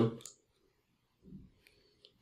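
A single faint click of a computer mouse about one and a half seconds in, after a man's speech trails off.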